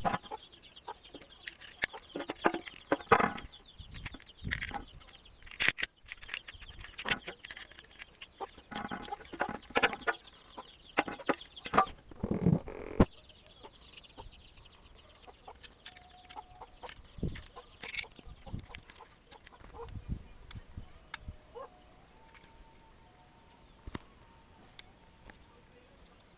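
Domestic fowl clucking: a run of short, irregular calls over roughly the first thirteen seconds, then quieter with only occasional sounds.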